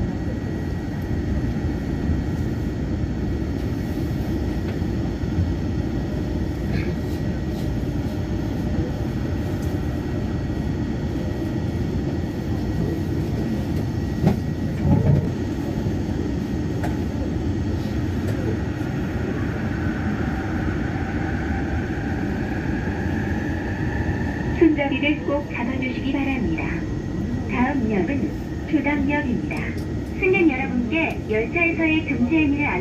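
Yongin EverLine light-metro train running with a steady rumble on its elevated track, with a single knock about halfway through. Past the middle a rising electric whine comes in as the train gathers speed away from the station.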